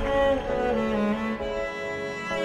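Cello with other bowed strings playing slow, held notes that change pitch about every half second to a second: the instrumental opening of a ballad, before the singing comes in.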